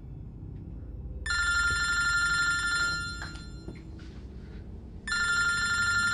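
A telephone ringing twice, each ring a steady electronic-sounding tone about a second and a half long, with a pause of a little over two seconds between them.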